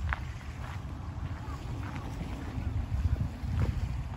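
Wind buffeting the microphone, a gusty low rumble that comes and goes, with a few faint short clicks over it.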